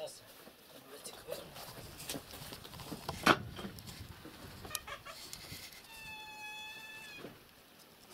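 A faint animal call: one held, nearly even-pitched cry of about a second, starting about six seconds in. A single sharp knock about three seconds in.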